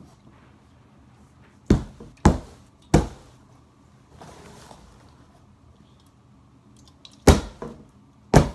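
A large corrugated cardboard box struck hard with a handheld object: three hits about half a second apart, about two seconds in, then one more near the end.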